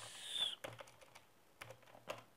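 Computer keyboard typing: a few faint, scattered keystroke clicks, after a brief hiss near the start.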